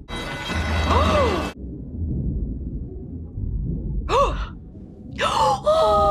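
A low rumble of the volcano from the film's soundtrack, with a noisy burst at the start. A woman's sighing 'oh' comes about a second in and again about four seconds in.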